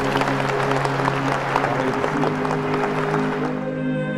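Applause from a crowd of guests, a dense patter of many clapping hands over sustained background music, dying away near the end.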